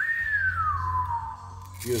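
A man whistling one long falling note that starts suddenly and slides down over about a second.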